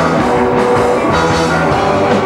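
Punk rock band playing live: electric guitars, bass guitar and drum kit, with cymbals hit on a steady beat.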